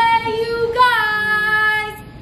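A woman's voice singing two long held notes, the second lasting about a second.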